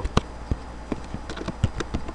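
Irregular sharp clicks of computer mouse and keys being worked, about nine in two seconds, over a low steady electrical hum.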